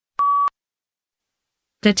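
A single short electronic beep, one steady pitch lasting about a third of a second, the start tone that cues the spoken response in a PTE read-aloud task. A voice begins reading aloud near the end.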